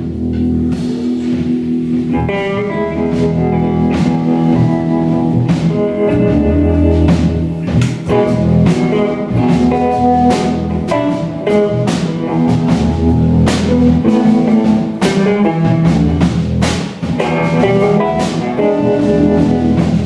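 Live jazz guitar trio playing: electric guitar lines over electric bass and a drum kit with regular cymbal strikes.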